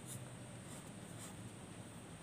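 Pencil lead scratching on paper as outlines are sketched, in a few short strokes, over a faint steady low hum.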